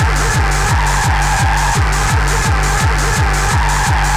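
Hardcore gabber techno: a heavily distorted kick drum pounding about three times a second, each beat sliding down in pitch. It runs under a dense, steady synth layer and fast hi-hats.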